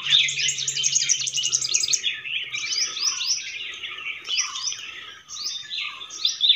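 Several birds singing and calling at once: many quick, high chirps overlapping, coming fastest in the first two seconds and then continuing in looser bursts.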